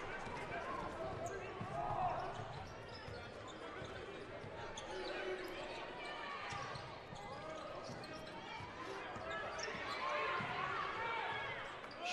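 Basketball game sound in an arena: a ball dribbling on the hardwood court under a steady background of crowd chatter.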